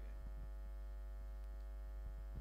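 Steady electrical mains hum from the sound system, a low buzz with a few faint ticks over it.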